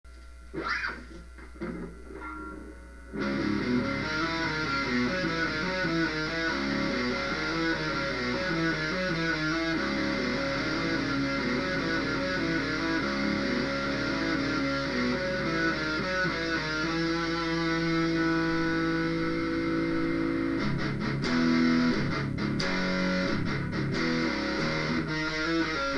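Electric guitar, an Ibanez, playing a picked line of single notes that starts about three seconds in after a brief quiet opening. Later on, the notes ring out longer.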